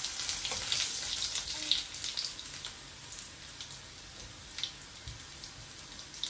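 Stuffed bitter gourds shallow-frying in oil in a steel kadhai, sizzling steadily with scattered pops and crackles. A few light clicks come from a flat metal spatula against the pan in the first couple of seconds.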